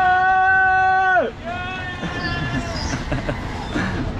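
A man's long, loud yell held on one pitch, cutting off about a second in, followed by a shorter, higher call, over the low rumble of a spinning fairground ride.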